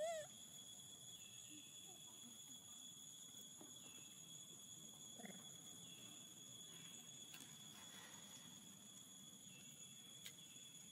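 A baby macaque gives one short, high squeak at the very start, then near silence with a faint, steady, high-pitched insect drone and a few faint chirps.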